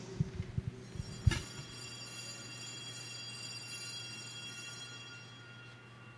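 An altar bell struck once about a second in, ringing with several clear high tones that fade slowly over the next few seconds. It is rung at the elevation of the host, just after the words of consecration. A few soft knocks come just before the strike.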